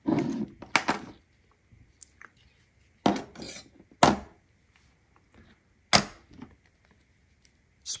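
Metal pocket tools and key-keeper clip hardware being handled: four sharp metallic clicks and clinks a second or two apart, some ringing briefly, as a multi-tool is picked up.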